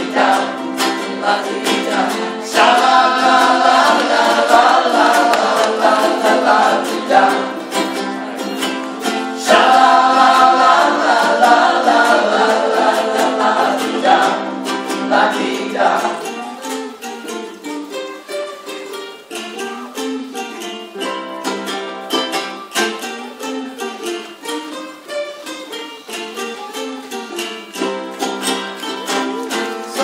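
A ukulele band strumming and singing together in unison. About halfway through the voices drop away and the ukuleles play on more quietly.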